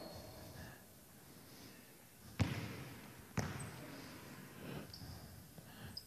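A basketball bouncing twice on a hardwood gym floor, about a second apart, each bounce ringing briefly in the large hall. A few faint short squeaks come in between.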